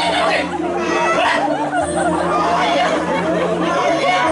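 A performer's spoken stage dialogue: a man's voice talking steadily, its pitch swinging widely, over a steady low hum.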